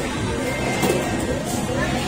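Arcade ambience: game-machine music playing, mixed with people's voices.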